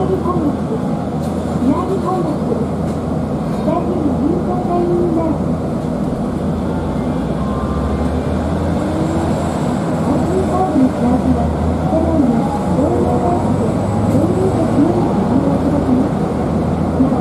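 Recorded onboard announcement of a Hiroshima streetcar in Japanese, naming the next stop and giving fare-payment notes, over the steady low rumble of the tram running. A short chime sounds partway through.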